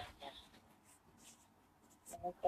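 Near silence: room tone in a pause between spoken phrases, with a few faint soft noises.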